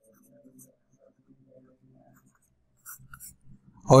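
Faint scratching of a stylus writing on a pen tablet, in short strokes over the first two seconds and again briefly about three seconds in. A man's voice starts just before the end.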